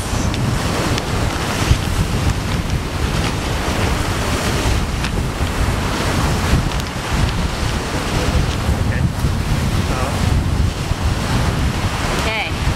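Wind buffeting the camera microphone in an uneven low rumble, over the steady rush of breaking ocean surf.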